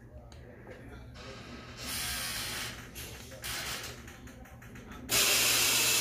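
Air hissing from a Hillrom hospital bed's air mattress system as the bed is adjusted. It comes in two stretches: a softer hiss about two seconds in, then a loud, steady hiss that starts suddenly about five seconds in.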